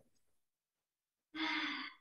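Dead silence, then a person's short sigh of about half a second starting about two-thirds of the way in, heard over a video-call connection.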